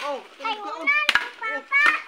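A child's high voice chattering, with two sharp chops of a machete into wood, one right at the start and one about a second later.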